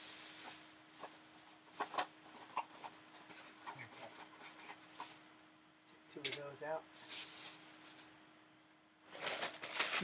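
Small household items being rummaged through and put down: rustling, crinkling and light knocks and clicks. A voice briefly murmurs a little past the middle.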